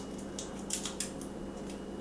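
Dry, papery garlic skins crackling in a few short, sharp crackles as fingers peel them off lightly crushed cloves.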